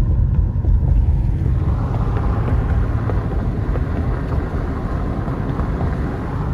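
A car driving, heard from inside the cabin: a steady low rumble of engine and road. A hiss of tyre noise joins about a second and a half in.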